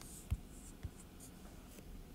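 Faint taps and scratches of a stylus writing on a tablet screen, with a light tap about a third of a second in and a smaller one near the middle.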